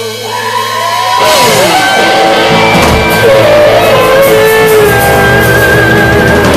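Live rock band playing loudly: a held electric guitar note with sliding pitch, then about a second in the drums and bass come in full, with the electric guitar bending and sliding notes over them.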